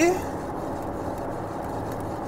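Steady rush of air from a paint spray booth's ventilation, even throughout, with the end of a spoken word at the very start.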